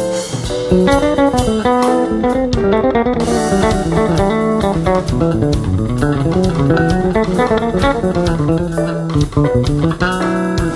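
Instrumental rock: a lead guitar playing quick runs of notes over a bass guitar line.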